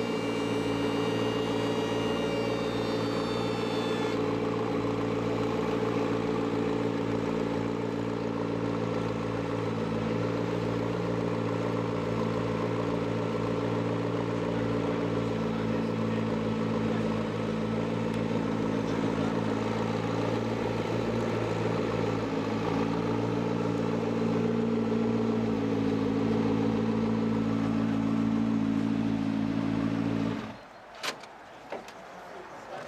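McLaren P1's twin-turbo V8 idling steadily, with a faint higher whine over it for the first four seconds or so.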